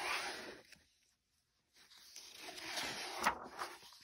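Soft paper rustling as a picture-book page is turned and then smoothed flat by hand: a short rustle at the start, a pause, then a longer rustle with a light tap about two seconds in.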